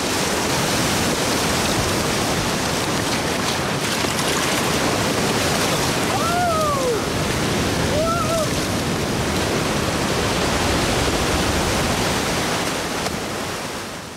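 Ocean surf washing steadily, a loud even rush of breaking waves, with two short arching high calls about six and eight seconds in. The sound begins to fade out near the end.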